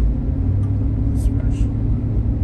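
Steady low engine and tyre drone heard inside the cabin of a pickup truck on mud-terrain tyres, driving at steady speed.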